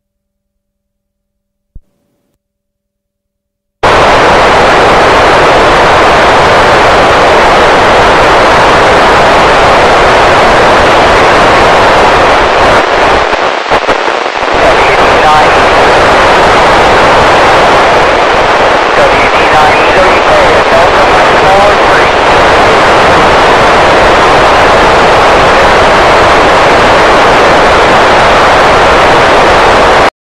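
FM transceiver receiver noise: silent with one short blip about two seconds in, then at about four seconds the squelch opens onto loud, steady hiss with a few faint wavering tones in it. This is an open FM receiver with no usable signal, as the satellite's downlink fades at the end of its pass.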